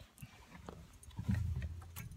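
Handling noise from a phone being passed over and gripped: small clicks and rubbing against the case, with a short low rumble a little past a second in.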